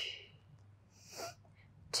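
A woman's audible hissing out-breath fading away, then a short, faint breath about a second later: paced Pilates breathing during a seated spine rotation.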